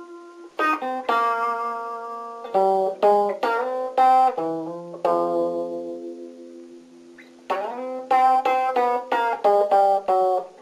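A guitar played with a pick: a slow melody of single notes and chords, with short runs of quick notes broken twice by notes left to ring and fade away.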